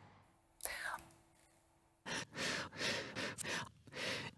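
A person's breath sounds, cut out of speech: a sharp intake of breath about half a second in, then after a brief lull a run of short, quick breaths and breathy mouth sounds from about two seconds on.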